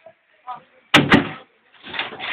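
Two sharp knocks about a second in as a large box is handled and set down, with brief voice sounds around them.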